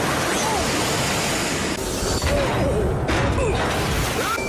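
Loud, continuous rush of splashing water as a locomotive ploughs through floodwater, with a few short gliding tones over it.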